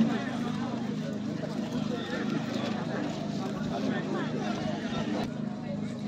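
Background crowd chatter over a steady low hum.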